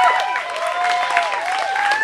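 Audience applauding, with whooping and cheering voices rising and falling over the clapping.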